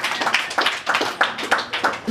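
A small audience clapping in a room: a run of sharp hand claps, several a second.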